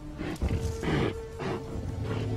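Loud calls of a large animal, in a few bursts around the middle, over background music with a long held note.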